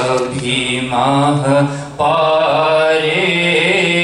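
A man's voice chanting an Islamic devotional recitation in long, melodic held notes, with a short break for breath about two seconds in.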